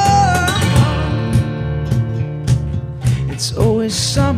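Live acoustic rock song. A male singer's long held note bends down and breaks off just after the start. Acoustic guitar strumming then carries on alone, and the voice comes back in near the end.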